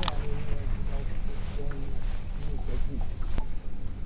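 Low steady rumble of wind on the microphone under faint, indistinct talk, with a sharp click right at the start and another about three and a half seconds in.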